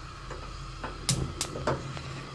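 Five-burner gas hob with all burners lit, the flames giving a steady hiss, and four sharp clicks in the middle.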